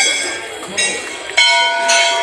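Hindu temple bells struck about three times in quick succession, each strike ringing on with several steady tones that fade slowly, over the voices of a crowd.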